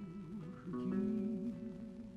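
Seven-string guitar sounding plucked notes under a male voice singing a Gypsy folk song, holding a low note with a wide, even vibrato from about a third of the way in.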